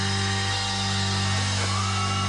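Hard rock band playing live: a held, distorted electric guitar chord over a sustained low bass note, with no drumbeat, and a short upward bend in pitch near the end.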